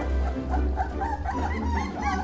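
Background music with a steady low beat, over which Akita puppies give high, rising-and-falling whimpers and yips, about four a second.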